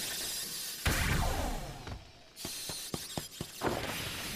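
Soundtrack of the anime episode being watched: music with sound effects. A loud rush of noise fills the first two seconds, then a string of sharp knocks or clicks follows about three seconds in.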